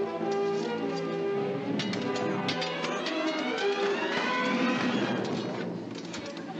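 Orchestral film score: held chords give way about halfway through to a rising run of pitches, with a few sharp knocks of fighting in between.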